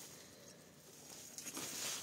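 Quiet background with faint, light rustling and a few soft ticks, like eggplant foliage brushed by the moving camera.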